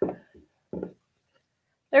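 A few short, dull knocks of the wooden boards of a pressing station being separated and handled, three in quick succession within the first second.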